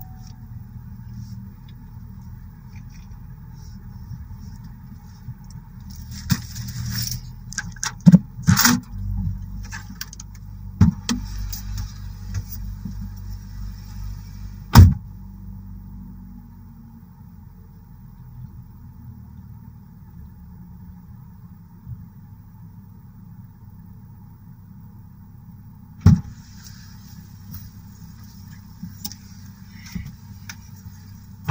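A parked car's engine idling steadily, heard from inside the cabin. Sharp knocks and clicks fall over it: a cluster about six to eleven seconds in, then single loud knocks near fifteen and twenty-six seconds.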